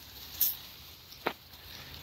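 Faint rustling in dry leaf litter and twigs, with a short rustle about half a second in and a single sharp tick a little after one second.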